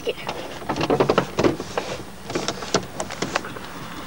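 A car's side window being opened a crack from inside the closed car, with a run of irregular clicks and rustles.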